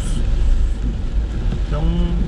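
A car driving on a wet road, heard from inside the cabin: a steady low rumble under an even hiss of tyres on wet asphalt.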